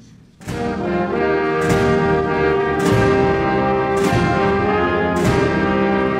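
A brass band playing national anthems. One piece dies away, and about half a second in the band starts the next with full sustained chords and a strong accented beat roughly once a second.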